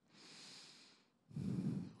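A person breathing close to a handheld microphone: a faint breath in through the mouth, then a louder breathy out-breath near the end, during a pause before answering a question.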